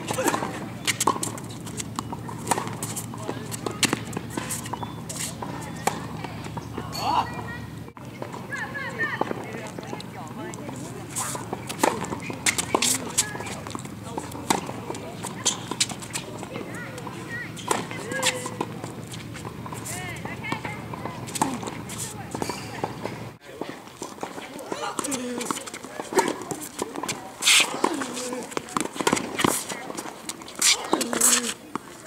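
Tennis ball struck again and again by rackets and bouncing on a hard court, sharp irregular hits a second or two apart, with indistinct voices in the background.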